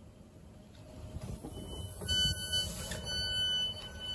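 Train passenger-door warning tone: a high electronic beep that sounds in short pulses from about a second and a half in and then holds steady, over the low rumble of the stationary train.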